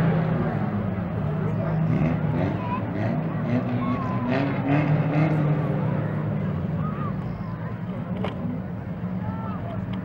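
Speedway race car engines running out on the dirt track, a steady drone that slowly fades, with spectators talking close by.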